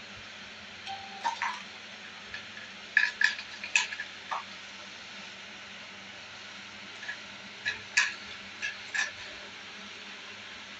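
Plastic toys knocking and clicking together as they are handled on a hard tiled floor, in scattered groups of light taps.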